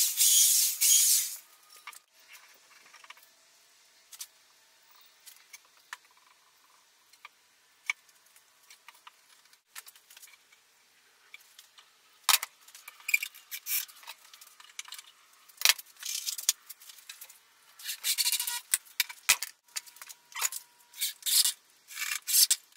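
A power drill running into wood for about a second and a half at the start, then scattered clicks and taps of screws, tools and boards being handled. In the second half the clicks and rattles come thick and fast, with short bursts of drilling near the end.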